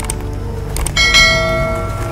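Suspense soundtrack: a low steady drone, then a bell-like tone struck about a second in, ringing out and fading over about a second.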